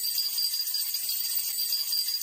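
Jingle stick, small metal jingle bells mounted on a wooden handle, shaken continuously: a steady, high, shimmering jingle.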